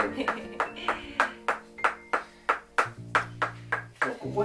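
Small wooden block striking rapidly and evenly, about four to five sharp taps a second, as a percussion treatment on a massage client's back.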